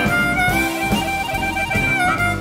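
Jazz-blues band music: a lead instrument holds one long high note over the band's steady beat.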